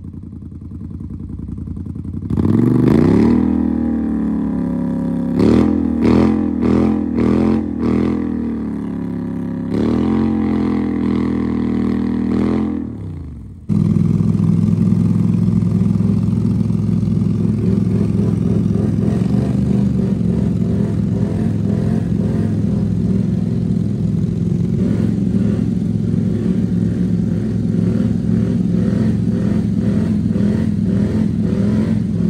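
ATV engine revving hard in deep mud, its pitch climbing and dropping with a run of quick throttle blips partway through. After an abrupt change, an engine runs on at a steady note.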